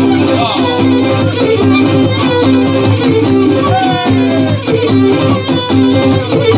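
Cretan lyra and laouto playing an instrumental passage between sung mantinades, repeated notes in a steady rhythm, with one sliding note about four seconds in.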